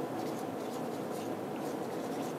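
Writing sounds: a pen or similar writing tool making irregular short scratching strokes, over a steady low room hum.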